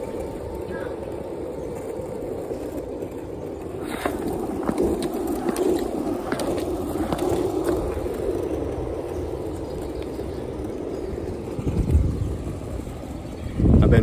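Longboard wheels rolling on asphalt, a steady rumble with a few sharp clicks in the middle, and a couple of low rushes of noise near the end.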